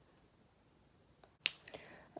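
Quiet room, then a single sharp click about one and a half seconds in, followed by a few faint clicks and rustles of handling.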